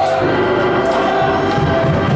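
Live gospel worship music: group singing with a band, long held notes over a pulsing low beat.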